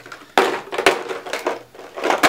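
Empty candle and wax-melt containers being dropped into a bin, a few sharp knocks and clatters, the loudest about a third of a second in.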